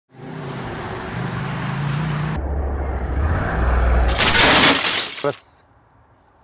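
Loud edited opening sounds: a low, engine-like hum that shifts in pitch and drops deeper partway through. About four seconds in comes a loud crashing noise burst, the loudest sound here, which fades out after a little over a second.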